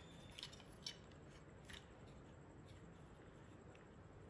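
Near silence with a few faint, brief clicks and scrapes of small plastic toy-robot parts being handled: one about half a second in, the loudest just before one second, and another near two seconds.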